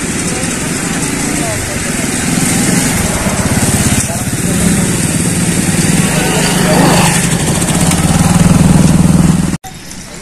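A motor vehicle engine running close by over a steady noisy rush, its hum growing louder over the last few seconds before the sound cuts off suddenly near the end.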